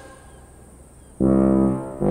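Comic brass music sting: after a second of near quiet, one held brass note sounds just over a second in and stops shortly before the next note.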